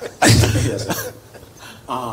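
A man coughing once, loudly and close to a microphone, about a quarter of a second in; it fades within about a second.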